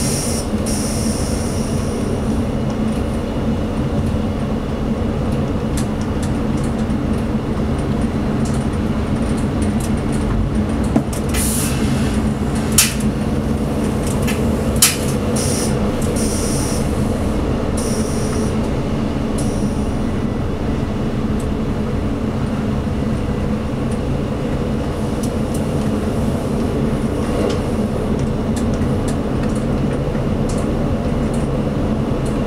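Diesel engine and running gear of a ČD class 842 diesel railcar heard from the driver's cab, a steady hum while the train runs along. High-pitched wheel squeal comes and goes on the curves, and three sharp clicks sound in the middle.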